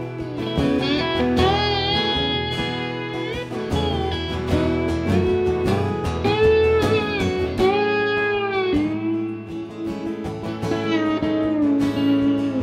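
Instrumental break: an electric slide guitar plays a solo of gliding, bending notes over a strummed acoustic guitar.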